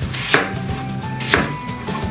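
Kitchen knife slicing through a peeled apple and striking the cutting board, two cuts about a second apart.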